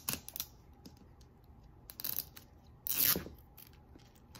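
Clear plastic wrap on a Mini Brands capsule ball crinkling and tearing as fingers pick it off the seam: a few short crackles, then a louder, longer tear about three seconds in.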